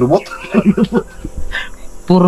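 A man's voice making a quick run of short vocal sounds in the first second, then falling quieter.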